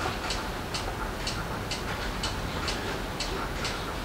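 Regular light ticking, about two ticks a second, over a steady low hum.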